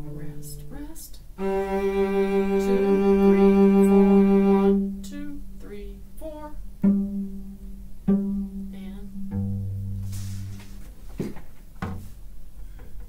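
Cello played with the bow: a low note ends, then a long held note grows louder for about three seconds, followed by shorter notes with sharp attacks and a lower note. A single knock comes near the end.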